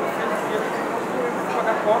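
Indistinct voices talking in the background, steady throughout.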